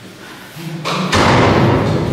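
A loud thud about a second in, just after a sharper knock, ringing on briefly before it fades.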